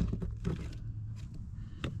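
Jeep Wrangler TJ wiper motor and linkage assembly being worked out of the cowl: a few faint metal clicks and knocks, then one sharper click near the end.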